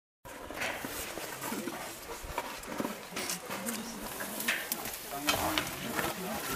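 Indistinct, quiet voices with scattered small clicks and knocks.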